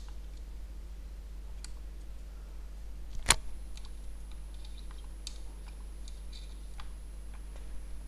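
Hands working the small boiler fittings of a model steam traction engine: a few faint taps and one sharp click about three seconds in, over a steady low hum.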